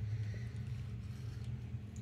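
Room tone with a steady low hum and no distinct handling sounds.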